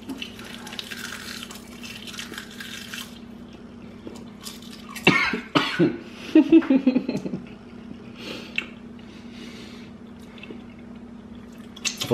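Crispy seaweed snack sheets crunched while chewing, then a cough about five seconds in, followed by a short voice sound.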